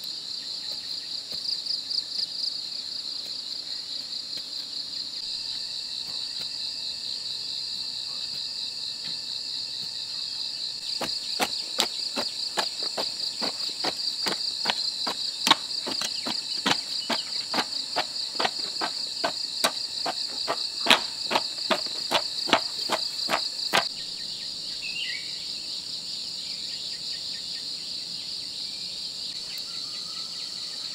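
A steady, high-pitched chorus of insects. Through the middle, a hand hoe chops into soil in a run of sharp strikes, about two a second, for some thirteen seconds.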